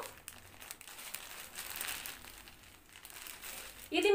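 Soft rustling and crinkling of a saree's fabric as it is unfolded and shaken out, coming and going in small bursts with a few faint ticks.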